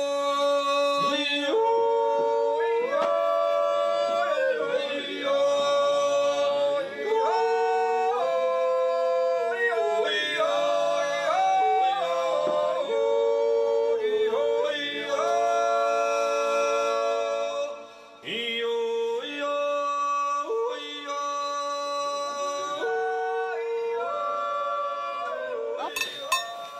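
Wordless a cappella yodeling, the voice jumping in steps between held notes, with a brief break about eighteen seconds in.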